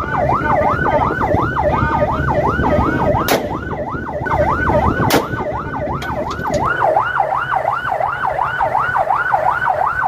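Patrol boat's siren wailing in a fast up-and-down yelp, about three sweeps a second. Two sharp cracks about two seconds apart, a few seconds in, are warning shots fired upward from a rifle.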